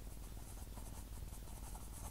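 Ballpoint pen writing on squared paper: faint scratching in a series of short strokes.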